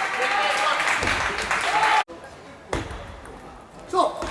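Voices shouting and calling in a large gym hall, cut off abruptly about halfway through; then quieter hall sound with a single sharp tap of a table tennis ball.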